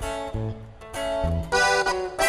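Band starting a corrido: a few separate plucked guitar notes, about one every half second, with low bass notes under some of them.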